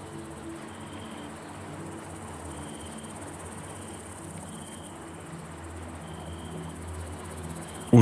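Crickets chirping in short high trills that repeat every second or two, over a soft, steady ambient music drone.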